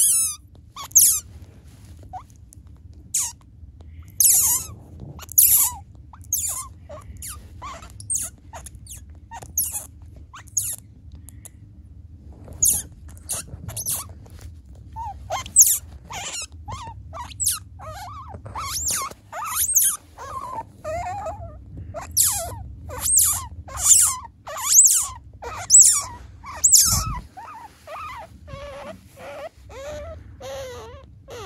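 A three-day-old Asian small-clawed otter pup squeaking in its sleep: many short, high-pitched chirps at irregular intervals, coming faster in the second half.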